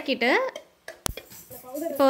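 A single sharp clink of a metal ladle against an aluminium cooking pot about a second in, with a few faint scrapes of the stirring around it.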